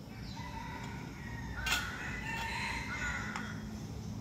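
A rooster crowing, drawn-out calls, with a sharp click about halfway through and a smaller one near the end.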